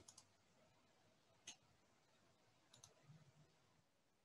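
Near silence: faint room tone with a few soft clicks, one about a second and a half in and a quick pair near three seconds.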